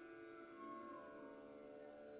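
Faint live instrumental accompaniment: several soft sustained notes ringing on together, with a brief high tone sounding about a second in.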